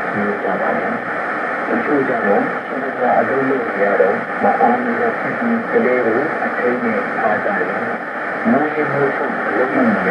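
A voice speaking in a shortwave radio broadcast of Radio Veritas Asia received on 9720 kHz: thin and muffled, with nothing above the middle range, over a steady hiss of static.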